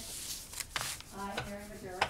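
Papers rustling and rubbing on a desk, with a sharp tick about three-quarters of a second in. A voice speaks quietly from a little past a second in.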